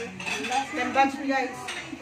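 Spoons and forks clinking against dinner plates as people eat.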